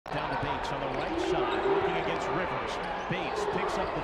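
Basketball bouncing on a hardwood court, several irregular bounces, with voices in the background.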